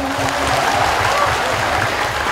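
A man's held note sung in a woman's voice ends about half a second in, and the audience applauds with some cheering voices.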